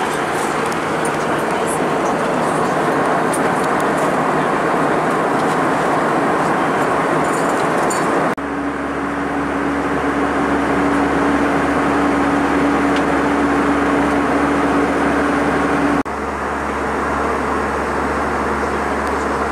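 Steady in-cabin noise of an Airbus A320 in cruise, the rush of airflow and the hum of its CFM56-5A engines. The sound changes abruptly twice, about eight and sixteen seconds in, with a steady low hum standing out in the middle part.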